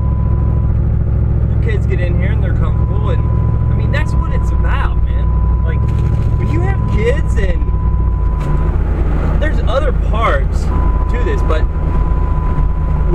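Steady low road and engine rumble inside a moving vehicle's cabin, under a man talking, with a thin steady high tone that drops out twice.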